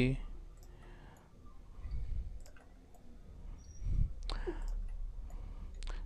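Light, scattered clicks of a computer mouse and keyboard keys as Blender scale, move and rotate operations are carried out, over a low steady hum.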